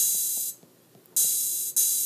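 Three cymbal samples triggered from the drum pads of the iMaschine app on an iPad. There is one hit at the start, then two more about half a second apart a little past a second in. Each is a short, high hiss lasting about half a second.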